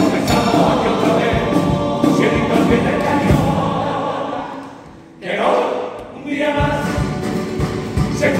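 Carnival comparsa choir of male voices singing in harmony with Spanish guitar accompaniment and low drum beats. About five seconds in the music drops away almost to nothing, then the voices come back in.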